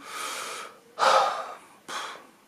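A man breathing audibly in a pause between phrases: a soft breath, then a louder, fuller breath about a second in.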